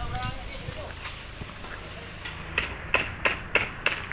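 A quick series of sharp knocks or strikes, about three a second, starting about halfway through, after a brief voice at the start.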